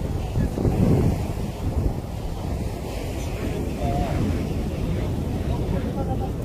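Wind buffeting the microphone: an uneven low rumble that swells and drops.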